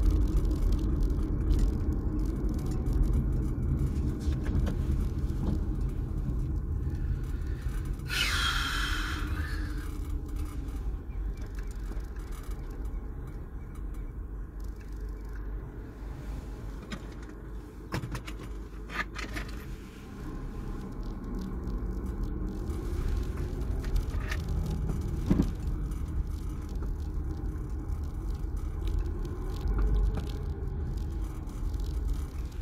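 Road and engine noise heard inside a moving car's cabin: a steady low rumble that dies down through the middle as the car slows behind traffic, then builds again as it picks up speed. A brief loud hiss about eight seconds in.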